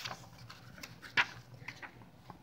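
A book page being turned by hand: a few short paper rustles and flicks, the loudest about a second in.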